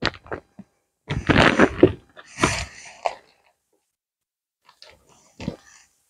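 Plastic packaging of wax melts rustling and crinkling as they are handled, in several short bursts with pauses between them.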